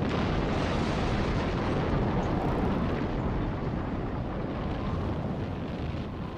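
Continuous roaring rumble of an atomic test explosion's blast wave, steady and easing off slightly near the end.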